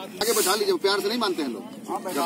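Speech: a voice talking, with a brief sharp hiss about a quarter of a second in.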